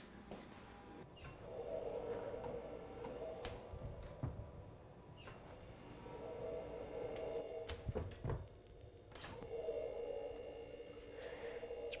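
Quiet handling of wooden cabinet doors: scattered soft clicks and knocks, over a faint low tone that swells and fades three times.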